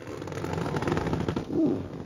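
The vinyl-covered front bench seatback of a 1964 Chevrolet Chevelle being tilted forward: the upholstery and the seatback hinge creak and rub, building up over about a second and a half and then fading.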